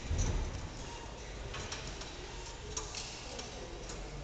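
Uneven bars in use as a gymnast mounts the high bar and swings up: a low thump right at the start, then a few sharp clicks and knocks from the bar and its fittings.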